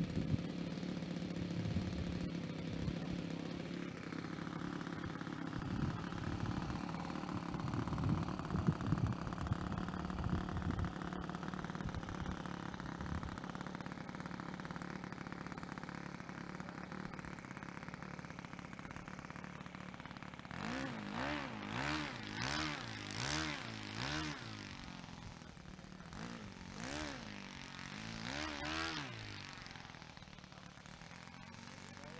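A model aircraft engine running steadily, then blipped up and down in repeated rises and falls of pitch, about one a second, through the last third. A few knocks sound about a third of the way in.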